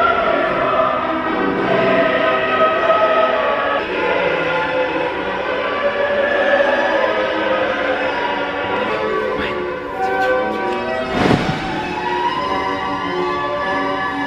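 Classical choral music, voices singing long held notes. About eleven seconds in there is a short rushing sweep.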